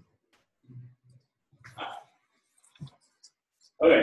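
Mostly quiet lecture hall with a few faint low murmurs and a soft knock, then a man starts speaking near the end.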